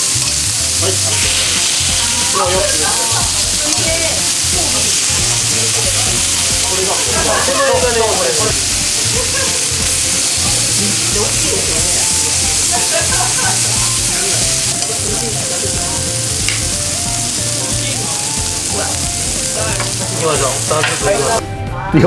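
Horumon (beef offal) and beef slices sizzling steadily on a cast-iron griddle over a tabletop burner, with tongs moving the pieces. The sizzle cuts off sharply near the end.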